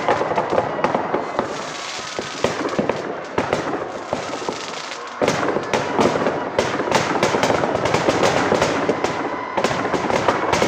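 Firecrackers packed inside a burning effigy going off in rapid, irregular cracks and bangs, growing suddenly denser and louder about five seconds in.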